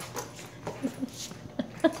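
Small poodle giving a few soft, short whimpers, with a person's laugh near the end.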